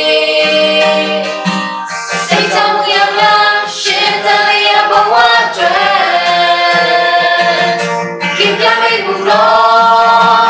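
A small group of women and men singing a Christian worship song together, in sustained, held notes.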